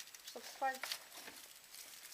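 Plastic packaging bag crinkling as it is handled, a few light crackles in the first second.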